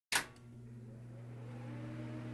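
Intro sting: a sudden hit just as the sound begins, fading into a steady low drone with a faint rising tone that slowly swells.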